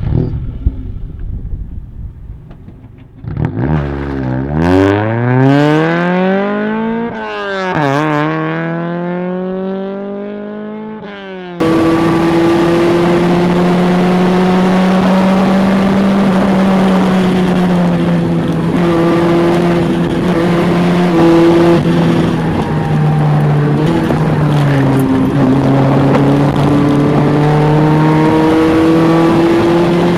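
Toyota Corolla GT-S AE86 engine pulling away hard after a few knocks, revving up through the gears, its pitch climbing and dropping back at each shift. After an abrupt change about twelve seconds in, the engine is heard from inside the cabin at steadier road revs, its pitch easing up and down as the car drives.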